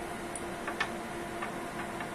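Steady low hum of running lab equipment, with a few faint light ticks scattered through.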